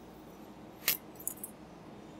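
Faint room hum with one short metallic click about a second in, then a few fainter clinks: the thin metal thumper tube knocking against the fitting in the neck of a liquid-helium dewar as it is drawn up.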